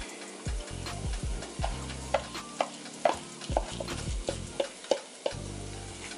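Wooden spoon stirring rice and vegetables in a cast iron skillet, with irregular sharp knocks against the pan, a few a second, over a low sizzle of frying.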